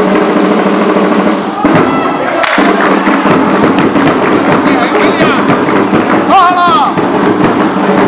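Loud crowd of football spectators shouting and cheering over many sharp percussive beats, with one voice calling out about six seconds in.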